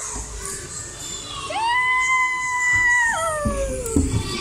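A child's long, high-pitched yell while going down a slide. It starts about a second and a half in, holds one pitch for well over a second, then drops and slides lower in pitch as it ends near the finish. Low thumps and knocks sound underneath.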